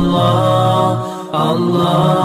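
An Urdu Islamic devotional song: a voice singing long, held notes, with a short break about a second in.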